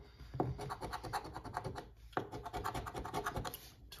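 A metal coin scratcher rubbing the latex coating off a lottery scratch-off ticket on a wooden table, in rapid back-and-forth strokes, with short pauses about two seconds in and again just before the end.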